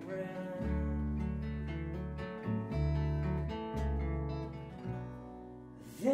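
Acoustic guitar strumming chords with an upright double bass plucking low notes underneath, each bass note held for about a second before the next.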